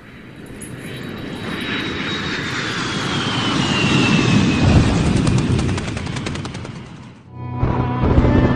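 Logo-intro sound effect: a rush of noise that swells over about four seconds, with a thin whistle falling slowly in pitch, then fades away a little after seven seconds. Music starts just before the end.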